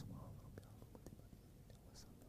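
Near silence: faint room tone with a few scattered small clicks and rustles.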